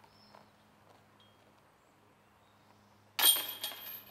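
Near silence, then about three seconds in a sudden loud metallic jangle that rings on briefly: a disc hitting the chains of a disc golf basket.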